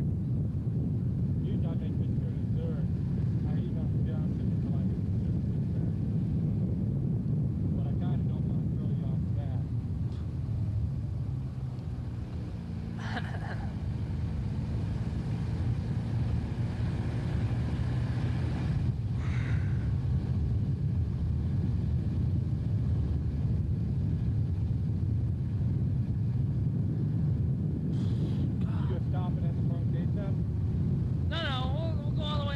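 Car driving down a winding road: a steady low drone of engine and road noise. It eases off a little around eleven to thirteen seconds in, with the engine pitch sliding, then settles back to a steady drone.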